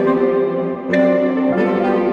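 Saxophone quartet of soprano, alto, tenor and baritone saxophones playing sustained chords together, moving to a new chord about a second in.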